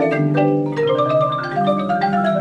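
Marimba ensemble, several marimbas with other mallet percussion, playing a fast, busy passage: many mallet strikes a second, each note ringing briefly, over sustained low notes.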